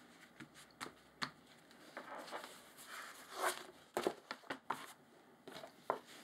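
Hands handling a book cover of greyboard boards glued to book cloth: soft rustling of paper and board, then a quick run of sharp taps and clicks about four seconds in as the cover is moved and turned over. Near the end a bone folder comes down on the cloth.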